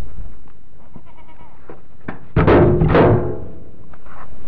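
A goat bleating loudly, two calls in quick succession about two and a half seconds in, the second falling in pitch.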